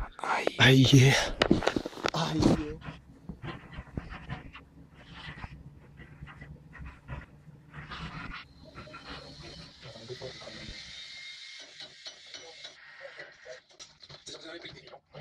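A man's voice and heavy breathing close to the microphone, loudest in the first couple of seconds and then fading into broken, quieter breaths. In the second half comes a steadier hiss that drops away shortly before the end.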